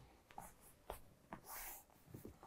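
Faint soft taps and rustling as hands and forearms are set down on a cork yoga mat on the way into forearm plank, with a short soft hiss about three-quarters of the way through.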